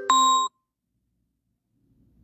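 A short electronic beep on one steady pitch, cut off abruptly about half a second in, followed by dead silence.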